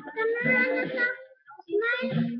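A child singing, holding long steady notes, breaking off about halfway through and starting again near the end.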